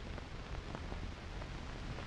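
Steady hiss with a low hum and a few faint clicks: the background noise of an old optical film soundtrack.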